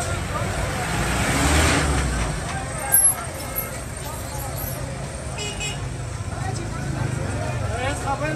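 Street traffic: vehicle engines and road noise under a crowd's faint voices. A vehicle passes with a rise and fall of noise about one to two seconds in, and a brief sharp sound comes about three seconds in.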